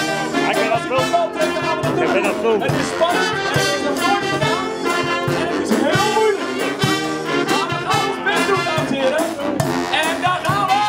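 A dweilorkest, a Dutch street brass band, playing live: a sousaphone, euphoniums and trumpets over a steady drum beat.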